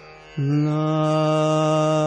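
Male Hindustani classical voice singing raag Bhimpalasi. The singer breaks off briefly at the start for a breath, then comes back just under half a second in and holds one long, steady note. A faint tanpura drone sounds underneath.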